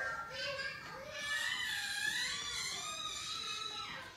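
Young children's high-pitched voices in the background as they play, with short calls and then one long, wavering cry through the second half.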